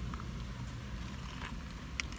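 Steady low rumble of a running car heard inside its cabin, with a short faint click near the end.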